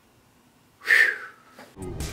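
A man's breathy exhaled 'whew', short and loud, about a second in after near silence. Music with a beat comes in just before the end.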